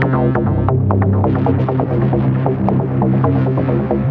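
Electronic techno music playing: a steady, droning low bass with fast repeated synth notes over it.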